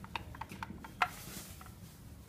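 Lift call button being pressed: a run of light clicks and taps in quick succession, the loudest about a second in.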